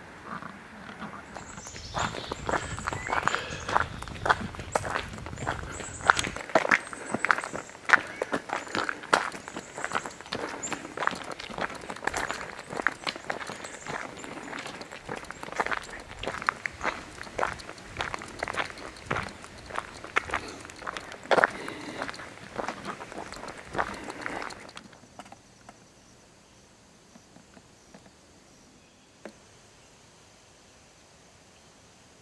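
Footsteps crunching on a gravel trail, a steady walking rhythm of roughly two steps a second that stops a few seconds before the end.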